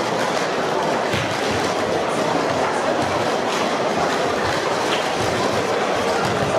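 Steady, dense clatter of many plastic sport-stacking cups being stacked and unstacked at once across a sports hall.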